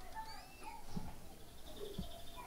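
Faint creaking of an old wooden door swinging open, a few thin squeaks from its hinges.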